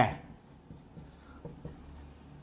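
Marker pen writing on a whiteboard: faint, short strokes.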